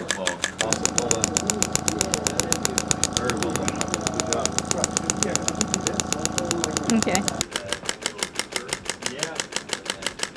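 Radial shockwave therapy handpiece firing against the buttock over the hamstring tendon origin: a rapid, even train of clicks, several a second. A steady machine hum runs under it from about half a second in and stops abruptly near 7.5 seconds. Voices talk in the background.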